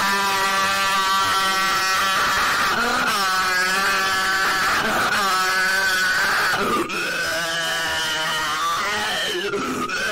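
A voice screaming in long, drawn-out cries, each held for a couple of seconds on a fairly steady pitch, with short breaks between them.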